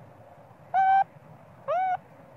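Two short tonal coo calls from a macaque, one about three quarters of a second in and one near the end, each lasting about a third of a second; the second slides up in pitch before levelling off.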